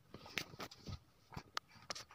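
Handling noise from the phone: about five short, faint clicks and taps spread over two seconds in a quiet room.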